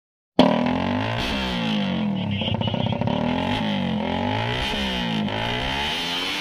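Two drag-race motorcycle engines, one of them a Suzuki Raider 150 Fi, revving again and again at the start line, their pitch climbing and falling several times.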